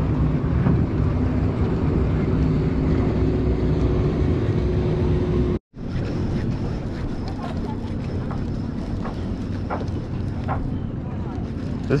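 Wind rumbling on the microphone over choppy water, with a faint steady low hum beneath it. The sound cuts out completely for an instant about halfway through, then carries on.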